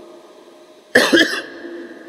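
A man coughs once, sharply, about a second in.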